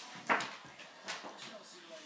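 Two dogs, a bloodhound and a bulldog–Rottweiler cross, play-fighting: short, sharp dog noises, the loudest about a third of a second in and two more around one second in.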